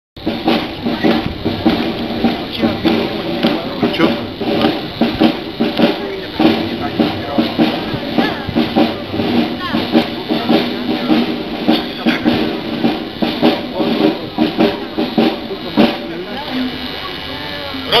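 Military brass band playing with a steady beat of bass and snare drums; the playing thins out shortly before the end.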